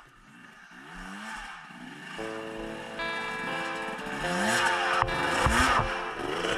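Dirt bike engine revving up and falling back in short bursts, with background music coming in about two seconds in and a single knock near the end.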